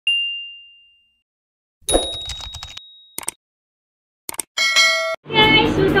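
Intro sound effects: a single bright ding that rings out for about a second, then after a pause a cluster of short clanks and clicks with a thin high tone. More clicks and a brief buzzy tone follow, just before a voice begins near the end.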